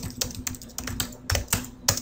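Typing on a computer keyboard: an irregular run of keystroke clicks, several a second.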